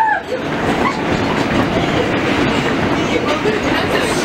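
An R160A subway car heard from inside while running between stations: the steady noise of wheels on rail and the car's running gear fills the cabin.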